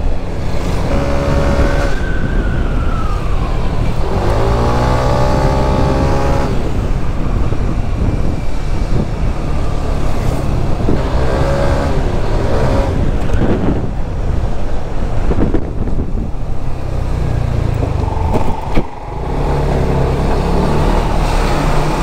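Yamaha NMAX scooter under way: its single-cylinder engine gives a steady low hum under wind noise on the camera microphone. A few brief higher tones cut in over it, one falling in pitch about two seconds in.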